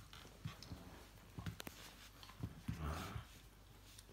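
A small dog playing tug-of-war with a plush toy, its paws and the toy scuffling on a rug, with scattered knocks and a louder rough burst about three seconds in.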